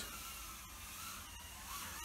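Faint high whine of a Mobula 8 micro FPV drone's motors in flight, heard at a distance over a low hiss, with two faint ticks in the middle.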